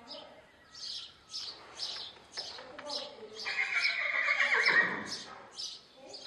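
A horse neighs once, a loud call of about two seconds that drops in pitch as it ends.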